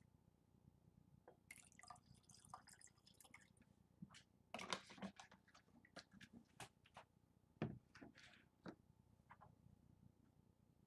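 Faint pour of scotch whisky from a large 1.75-litre bottle into a tasting glass, with scattered light clicks and knocks as the bottle and glass are handled.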